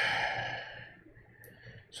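A man's long breathy sigh, fading out over about a second.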